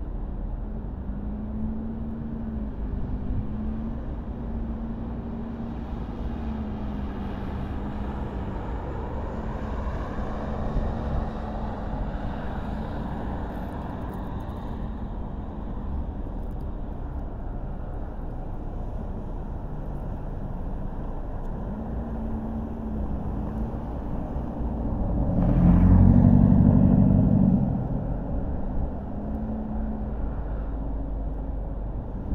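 Car driving slowly through city streets: a steady low engine hum and road rumble, the engine note rising and falling gently with speed. Near the end a louder engine sound swells for about two seconds and fades.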